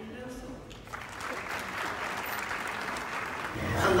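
Audience applauding in a large hall, the clapping swelling from about a second in. A man's voice over a loudspeaker reads out the next graduate's name near the end.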